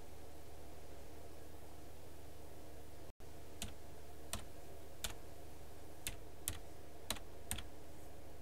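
Single key presses on a computer keyboard: seven separate clicks at uneven intervals through the second half, over a steady electrical hum. The sound cuts out completely for an instant just before the clicks begin.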